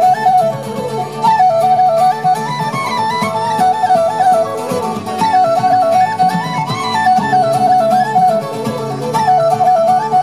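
Live Celtic folk band playing an instrumental tune: a woodwind carries a quick, ornamented melody over acoustic guitar and other plucked strings.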